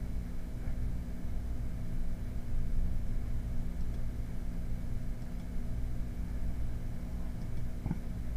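Steady low hum with a faint hiss: background noise with no distinct sound event.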